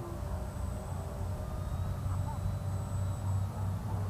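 Steady low rumble of wind on the microphone outdoors, with a faint, even whine from the small electric motor of a foam RC biplane flying overhead.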